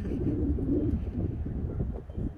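Dove cooing, a low soft call in the first half, over wind rumble on the microphone.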